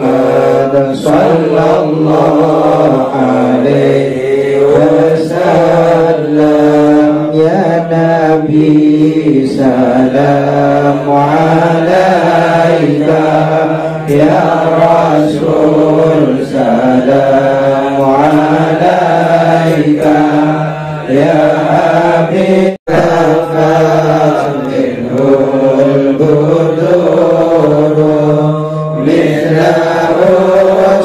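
Men chanting an Arabic devotional prayer in a slow, wavering melody over a low note held steady beneath it. The sound drops out for an instant about two-thirds of the way through.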